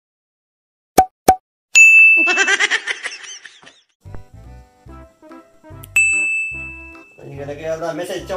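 Edited intro sound effects: two quick pops, then a bright ding and a burst of laughter. A music track with a steady bass beat starts about four seconds in, with a second ding about six seconds in.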